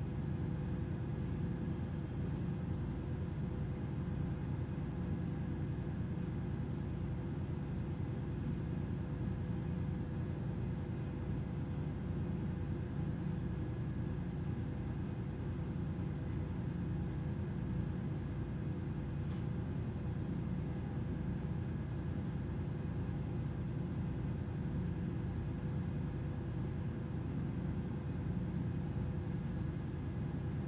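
Steady low rumble of a moored tanker's running machinery, with a faint, even hum of several fixed tones above it and no change throughout.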